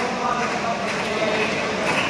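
Many voices murmuring together, with a few light knocks.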